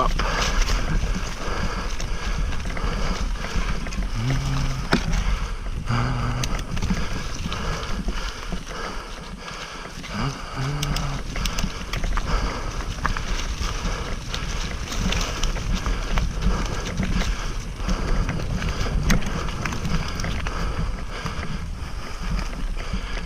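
Wind buffeting the camera microphone while mountain bike tyres roll over a leaf-covered dirt trail, with scattered sharp knocks and rattles from the bike over the bumps.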